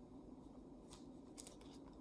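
Near silence, with a few faint light clicks and rustles of string and thin plastic sheet being handled as a knot is tied.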